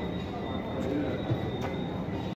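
Steady background room noise with faint, indistinct distant voices and a thin, steady high-pitched whine.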